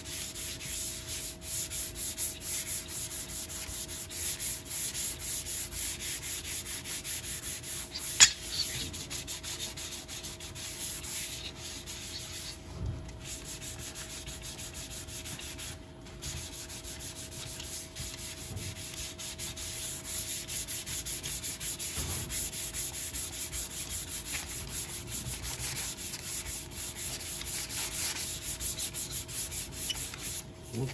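Hand sanding of filler-primer on a car interior trim panel with an abrasive pad, rapid back-and-forth rubbing strokes that level the primer through a dry guide coat. A single sharp click comes about eight seconds in.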